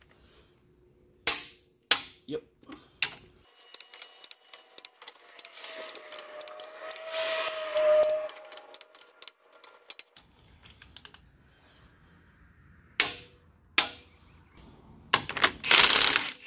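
Long click-type torque wrench rechecking the cylinder head bolts of a Cat 3126B/C7 diesel at 211 foot-pounds: a few sharp separate clicks, then a long run of fast ratchet ticking, two more clicks, and a louder clatter of tools near the end.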